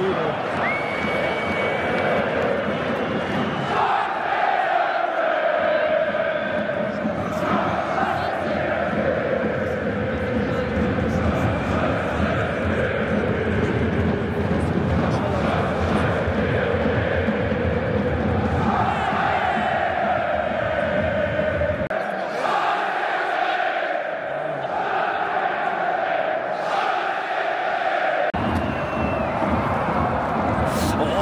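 A stadium crowd of football fans singing a chant together: a dense mass of voices carrying a slow melody that rises and falls, over general crowd noise.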